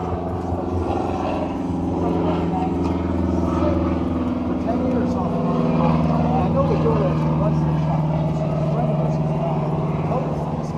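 An engine idling steadily with a low, even hum. Its pitch sags slightly around the middle.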